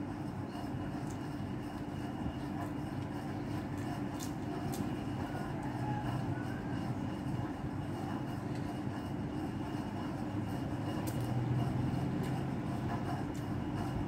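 A steady low rumbling noise with a constant hum running under it, and a few faint light clicks.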